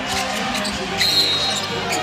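Game sound from a basketball gym: crowd hubbub with a basketball being dribbled on the hardwood court, and a short high tone about a second in.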